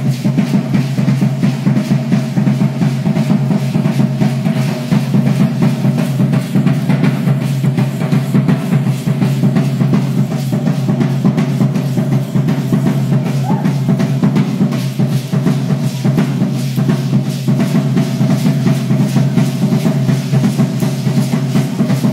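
Drum beating a rapid, steady rhythm for a costumed folk dance troupe, loud and unbroken, with a steady held tone underneath.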